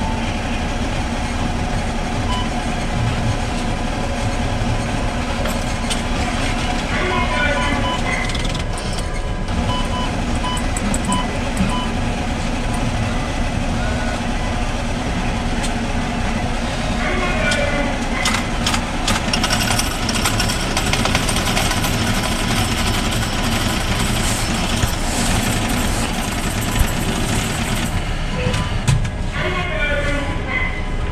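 A bank ATM's coin-counting mechanism running steadily as it counts a batch of deposited yen coins, a continuous mechanical rattle and whir.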